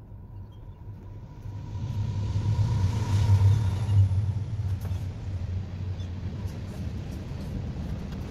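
A low rumbling hum, like a running engine, swells up over the first three seconds and then holds steady.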